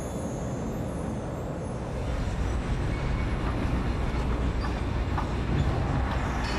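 Steady low rumble of heavy industrial machinery, growing louder about two seconds in, with a few faint clanks.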